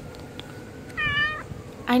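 A kitten gives one short, high-pitched meow about a second in.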